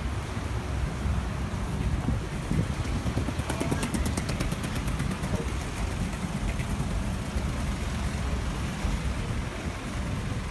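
City street traffic running past, a steady low rumble of road noise. A fast run of ticks sounds for a couple of seconds about three and a half seconds in.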